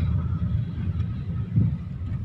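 Low, steady rumble of a car's engine and tyres heard from inside the cabin while driving slowly on a town street, with a slightly louder low swell about one and a half seconds in.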